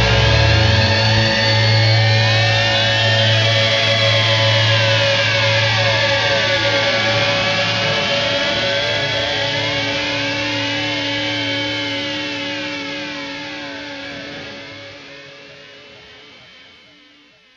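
Closing outro of a rock song: a held chord and low bass note under swooping, sweeping guitar effects, fading out steadily. The bass note drops out near the end.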